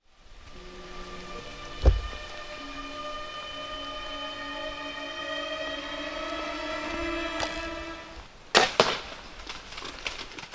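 Cinematic intro sound effects: a deep boom about two seconds in, then a droning chord that slowly rises in pitch and builds for several seconds, cut off by a few sharp cracks near the end.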